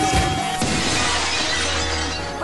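A breaking-glass shatter sound effect in a remixed wrestling entrance track. The beat and held tone cut out about half a second in, and the glass crash rings on and fades over the next second or so.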